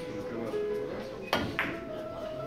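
Background guitar music. About two-thirds of the way in come two sharp clicks a quarter-second apart: a cue striking a Russian billiards ball, then the ball knocking into another.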